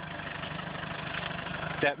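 Land Rover engine running steadily under load as it reverses up a snowy, muddy slope, getting slightly louder.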